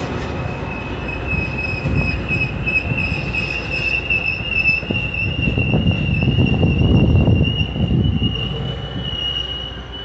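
Metra bilevel commuter coaches rolling past on the rails, with a steady high-pitched wheel squeal that creeps slightly upward in pitch. Underneath is an uneven rumble and clatter of wheels that swells to its loudest about seven seconds in, then eases.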